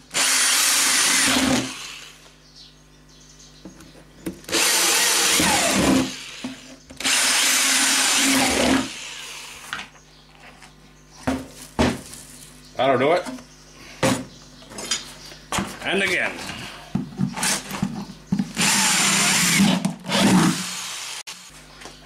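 Electric drill with a 3/8-inch bit boring drainage holes through the bottom of an old garbage can, in four short bursts of about two seconds each: three close together in the first nine seconds and one more near the end. Between the bursts come scattered knocks and clicks as the can is handled.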